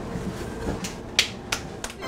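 A person clapping: four sharp hand claps, about three a second, starting a little before halfway through, over the low steady hum of the train carriage.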